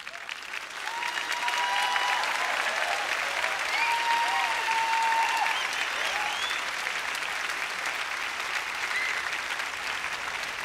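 A large concert audience applauding. The applause swells up over the first couple of seconds, then holds steady.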